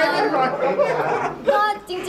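A woman talking in Thai, with other voices chattering over her.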